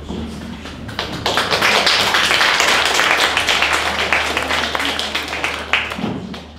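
Audience applauding, a dense patter of many hands clapping that starts about a second in and dies away near the end.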